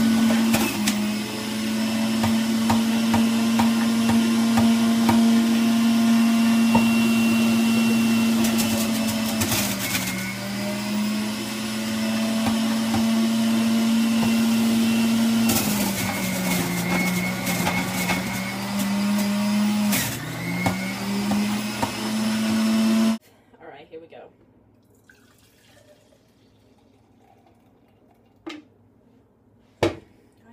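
Breville centrifugal juicer's motor running with a loud, steady hum. Its pitch dips several times as produce is pressed down the feed chute and the motor slows under the load. It cuts off suddenly a few seconds before the end, leaving a few light knocks.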